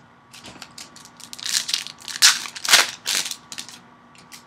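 Foil wrapper of a Prizm basketball card pack crinkling and tearing as gloved hands handle and rip it open, in a run of crackly rustles that is loudest in the middle.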